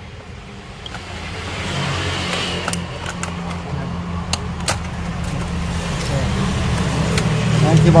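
Sharp plastic clicks as the retaining clips of a Dell Inspiron 15 3000 laptop keyboard are pried loose with a plastic pry tool, a few at a time. Under them runs a low engine-like drone that grows steadily louder.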